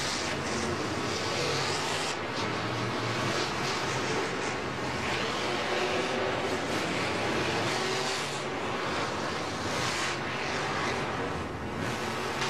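Monster trucks' supercharged V8 engines running, under a loud, steady crowd roar that fills the domed stadium.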